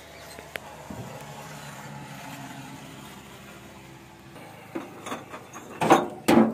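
Low steady hum of an engine running, then a few knocks building to one loud knock at the very end as the yellow goods vehicle's floor compartment is being opened and handled.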